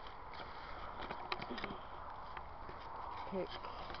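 Handling noise of a small handheld camera as it is moved through garden plants and set down: leaves rustling against it and a few light clicks and knocks, over a steady outdoor hiss.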